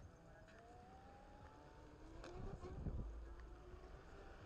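Onewheel V1 hub motor whining, its pitch rising steadily as the board speeds up, with a brief low rumble past halfway.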